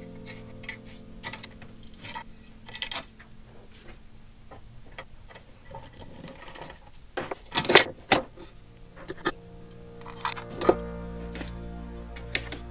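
Soft background music, with scattered clicks and taps of a screwdriver, pliers and small screws on a sheet-metal fan bracket, the loudest a little past halfway.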